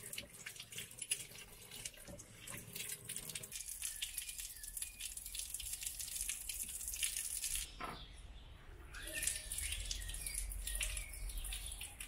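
Running water from a galley sink tap as dishes are rinsed, with a little clatter, then a stream of sink drain water splashing out of a through-hull fitting in the hull.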